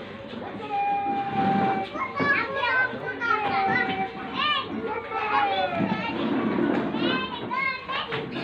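Children's voices calling and chattering in high pitches that rise and fall, with a couple of longer held notes, over a low background hubbub of spectators.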